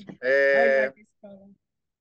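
A person laughing: one loud, drawn-out 'aah' held at a steady pitch for under a second, followed by a short, fainter vocal sound.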